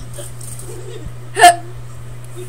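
A single short, sharp vocal sound from a girl, like a hiccup, about one and a half seconds in and much louder than anything around it, over a steady low hum.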